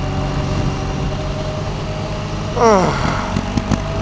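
BMW R1200 GS Adventure's boxer twin engine running steadily at cruising speed, heard from the rider's seat along with the rush of riding wind. About two and a half seconds in, a brief sound falls steeply in pitch.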